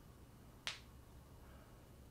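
A single short, sharp click a little past halfway through, against near-silent room tone.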